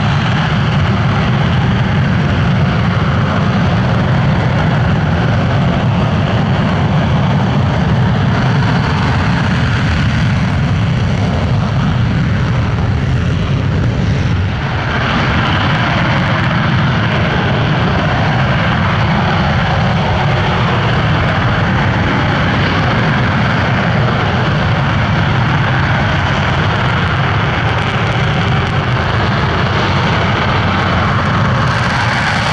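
Dassault Rafale M jets' twin turbofan engines running on the runway, a loud steady jet roar with a deep rumble beneath it. The sound dips briefly about halfway.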